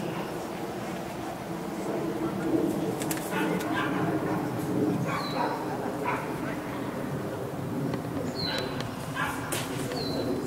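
A dog barking several times over people talking in the background.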